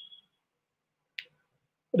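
Near silence on a video-call line, broken by one short, faint click about a second in; a man's voice begins right at the end.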